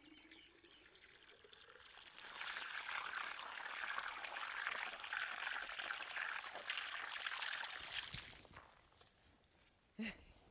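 Garden hose pouring water into a strawberry barrel, splashing onto the soil and leaves. The flow builds about two seconds in, runs steadily, then tapers off and stops about a second before the end.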